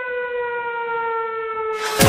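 A siren sounding one long, steady tone that slowly falls in pitch, with a louder rush of sound coming in right at the end.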